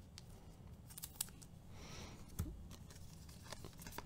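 Baseball cards being handled by hand, faint: scattered light clicks and taps of card on card, with a short sliding rustle about two seconds in.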